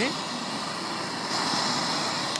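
Two handheld gas blowtorches burning steadily with a continuous hiss while heating a coiled tube to make superheated steam. A higher hiss grows stronger a little past halfway.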